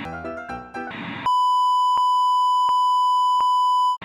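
A short stretch of music, then a loud, steady electronic beep tone that holds for almost three seconds and cuts off abruptly, with three faint ticks evenly spaced through it.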